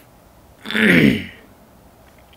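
A man clearing his throat once, a short voiced sound of about half a second, loud against the quiet room.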